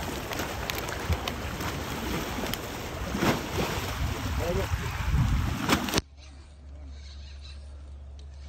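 Small waves washing against concrete steps, with wind on the microphone and a few sharp knocks. About six seconds in, the sound cuts abruptly to a much quieter steady low hum.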